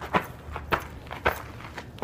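Four sharp knocks in a steady rhythm, about half a second apart, from an Astrojax attached-juggling dance routine.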